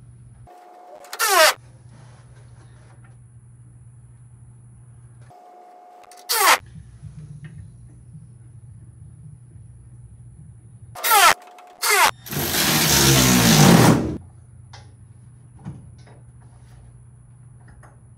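Cordless drill motor run in short bursts while driving air-suspension valve fittings, then one longer, louder run about twelve seconds in. A steady low hum sits under it.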